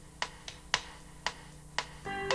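Sharp percussive clicks on a steady beat, about two a second with fainter clicks between them: a rhythmic count-in at the opening of a song. A faint low hum runs underneath.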